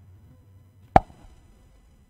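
A single sharp knock about a second in, with a faint low hum underneath.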